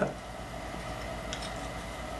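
Quiet room tone with a steady low hum, and a faint click about two-thirds of the way through as a small metal fret gauge is handled.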